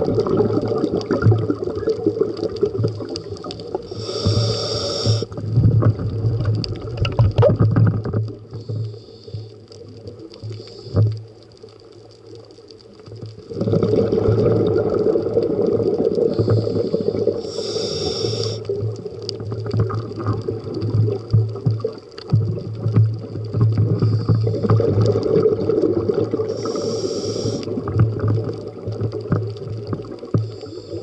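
Scuba diver's breathing through a regulator heard underwater: a short hiss at each of three inhales, about ten seconds apart, and long spells of exhaled bubbles gurgling, with a quieter pause around a third of the way in.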